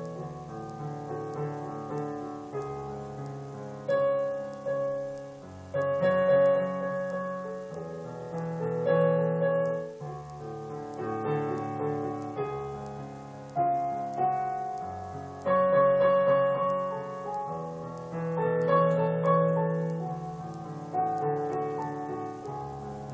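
Solo piano playing a slow, self-composed piece: sustained chords under a melody, with a fresh chord struck every two seconds or so and the sound swelling and fading between them. The recording is made on a mobile phone.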